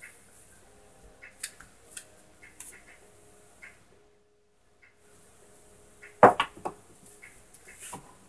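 Light clicks of a pair of dice being handled and set by hand on the felt, then about six seconds in a quick clatter of knocks as the thrown dice strike the table and bounce off the back wall.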